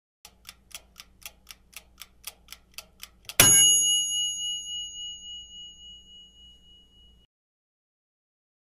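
Countdown-timer sound effect: a clock ticking about four times a second for some three seconds, then a single loud bell ding that rings on and fades away over about four seconds, signalling that time is up.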